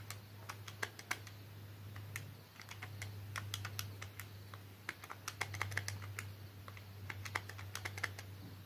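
Key presses on a Casio fx-991ES PLUS scientific calculator: quick, light plastic clicks in short irregular runs as a number and a sum are typed in. A faint steady low hum runs underneath.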